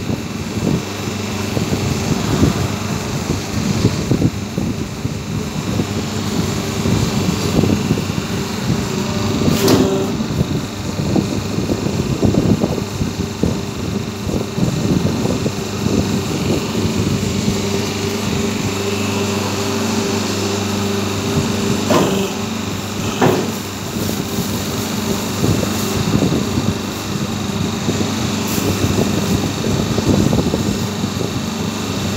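Semi-automatic hydraulic double-die paper plate making machine running: a steady hum from its hydraulic pump motor, with a few sharp clicks.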